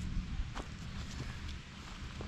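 Footsteps on a dry woodland floor, a few faint irregular crunches, over a steady low rumble on the microphone.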